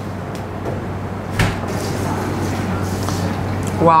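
Steady background hiss and low hum in a restaurant kitchen, with a single knock on a cutting board about a second and a half in, while a sliced grilled steak is handled. A voice exclaims right at the end.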